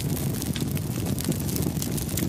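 Large fire burning beside a crashed truck: a steady rushing noise with dense crackling.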